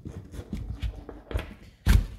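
Hands handling a nylon magazine pouch and the bungee-cord retainer looped over the magazine, with scattered small clicks and knocks and one sharp, loud knock just before the end.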